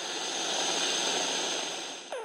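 Neuron firing picked up by a deep-brain-stimulation microelectrode and played through a monitor loudspeaker: a dense crackling hiss that swells slightly and fades near the end. The electrode is close to its target.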